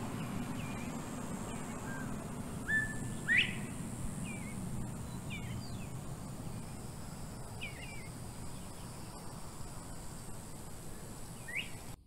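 Birds chirping now and then: about ten short calls, the loudest a quick rising call about three and a half seconds in, over a steady low hum and a faint high steady hiss.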